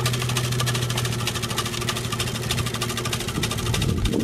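BOSS TGS 600 tailgate salt spreader working behind a slow-moving pickup truck: a steady hum from the truck and the spreader's spinner motor, with a fast, dense crackle of rock salt flung by the spinner onto the asphalt.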